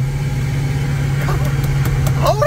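TorqStorm-supercharged stock 5.7 Hemi V8 cruising at light throttle, a steady low engine drone heard from inside the truck's cab.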